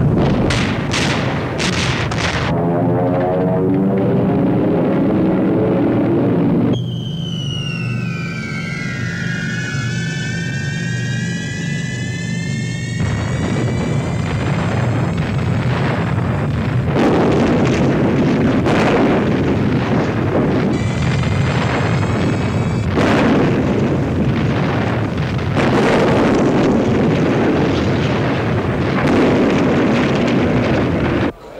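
Film soundtrack of a bombing raid. Repeated heavy bomb explosions sound over a steady low drone of aircraft engines and orchestral music. From about seven seconds in there is a stretch of falling whistles, then the explosions pile up again for the rest.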